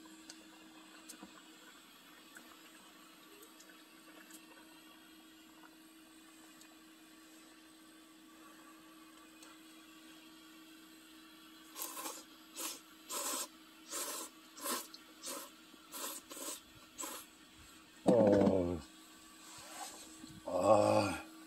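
A man slurping hot ramen noodles, about ten short, quick slurps in a row starting about twelve seconds in. A short vocal sound follows near the end.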